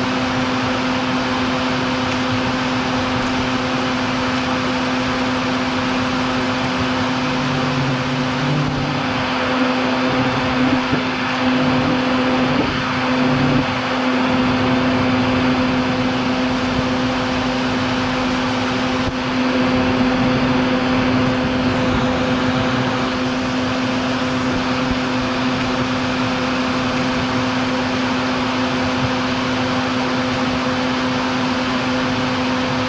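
Vacuum running steadily with a constant hum, drawing air through a hose whose nozzle is set at the entrance of a baldfaced hornet nest to suck up returning hornets. The sound rises a little a few times in the middle.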